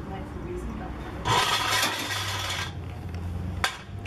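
Street noise with a low steady engine hum. About a second in comes a loud hiss lasting a second and a half, and near the end a single sharp metal knock as aluminium scaffolding poles are handled on a truck deck.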